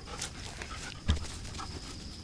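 A dog panting close to the microphone, with a single low thump about a second in.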